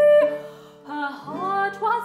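Soprano singing an English Renaissance broadside ballad, accompanied by a consort of lute, cittern and bowed viols. A long held note ends just after the start, and a new sung phrase with sliding pitch begins about a second in, over a steady sustained bass.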